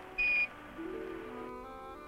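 A short single radio beep, the Quindar tone that closes a NASA air-to-ground transmission, followed by background music of slow, long-held notes.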